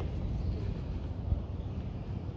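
Wind rumbling on the microphone, with a short thump about two-thirds of the way through.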